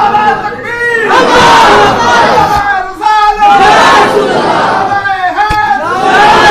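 Loud chanted shouting of voices over a public-address system, with several drawn-out calls.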